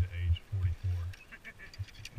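A person's voice calling out briefly in the first second, over heavy low rumbling bumps on the camera microphone, then a few light clicks.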